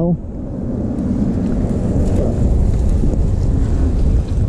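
Ducati Monster S2R 1000's air-cooled L-twin engine running at low speed, a dense low rumble mixed with wind on the microphone, growing slightly louder after a brief dip at the start.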